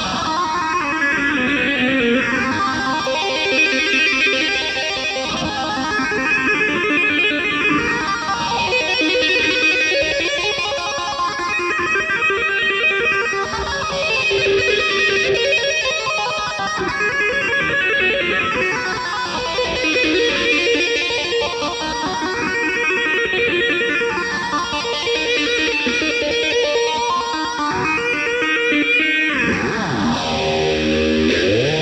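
Electric guitar solo played fast, shred style. A slow sweeping whoosh runs through the sound, rising and falling about every five seconds.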